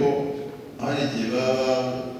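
A man's voice through a hand microphone, speaking in two drawn-out, fairly even-pitched phrases with a short pause between them.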